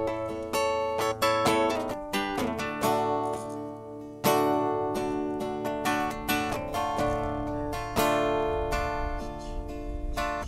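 Acoustic guitar picking a melody of ringing single notes, with full strummed chords struck about four and eight seconds in, in the instrumental opening of a folk song.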